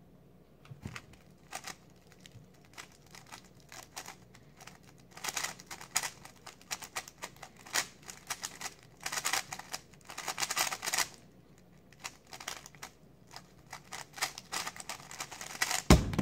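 3x3 speed cube being turned fast in a timed solve: a rapid plastic clatter of layer turns in bursts with short pauses. It ends with a sharp slap of hands on the speed-stacks timer to stop it.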